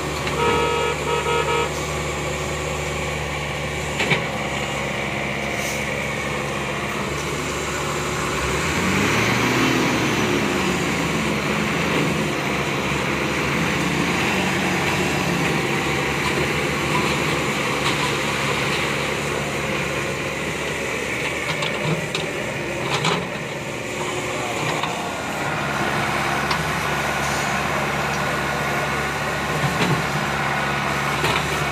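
Heavy diesel engines of a six-wheel crane dump truck and a Komatsu excavator running steadily, with a quick series of short beeps about a second in. Around eight to ten seconds in, an engine's pitch rises as it revs up.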